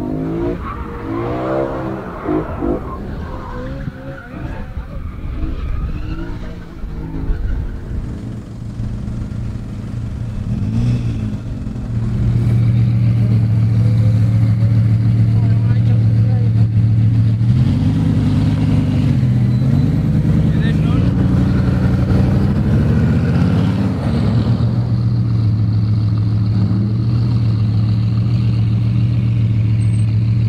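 Sports-car engines of a BMW M3 and a Bugatti Veyron. First a car is driven and revved with its pitch rising and falling. From about twelve seconds in, a loud steady engine drone idles at the start line, with revving blips about a third and three-quarters of the way through.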